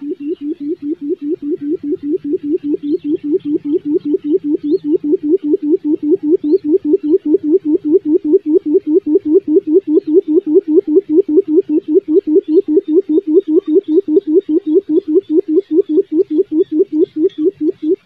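Quail giving its low drumming call: a long fast series of short hoots, about five a second, that swells steadily louder, then stops abruptly at the end.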